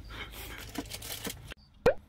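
Low background noise that cuts off abruptly about three-quarters of the way in, then a single short pop sound effect near the end, marking the cut to a new shot with a caption.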